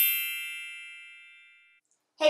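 A bright chime sound effect: a ringing chord of several high tones that fades away evenly over nearly two seconds.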